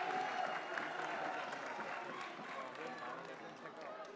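Audience applause dying away, with the crowd's voices chattering over it.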